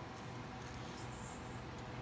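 Quiet room tone with a faint, steady low hum and no distinct sounds.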